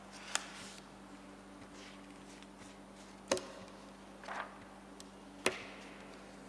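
Three sharp, isolated clicks spaced a few seconds apart over a quiet room with a steady low hum.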